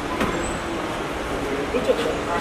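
Steady noise of a car running in an enclosed car park, with voices calling out over it and a couple of short sharp sounds near the end.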